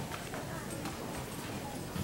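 Indistinct voices of people nearby, with light clicking footsteps on a hard floor.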